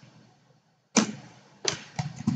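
Computer keyboard keys being struck: after a quiet start, two sharp clicks about a second in and a little later, with another at the end.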